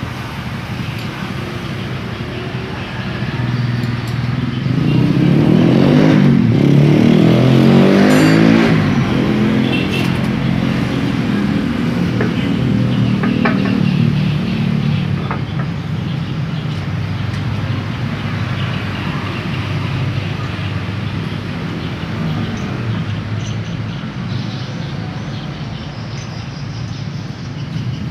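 A motor vehicle's engine running, growing louder to a peak about six to eight seconds in and then fading away over several seconds, over a steady background hum. A few light clicks come partway through.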